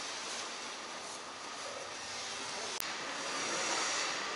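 Steady outdoor background noise, an even hiss with no distinct source, and a single brief click about three seconds in.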